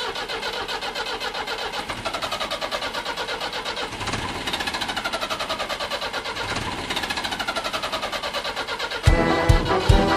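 A tractor engine sound effect running with a rapid, even pulse and revving up twice, opening a rock song. About nine seconds in, the band comes in with drums and loud rock music.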